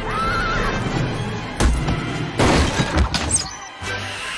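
Tense film score with a short wavering high cry near the start, then a run of loud crashes and shattering impacts in the second half.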